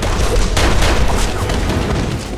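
A burst of rapid gunfire in a close-quarters firefight: many sharp shots in quick succession over a low rumble.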